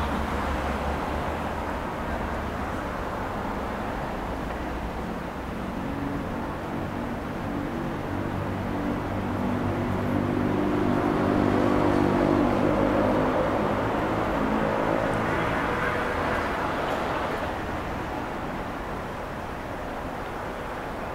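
Road traffic: a motor vehicle's engine hum swells over several seconds, is loudest around the middle, then fades away as it passes.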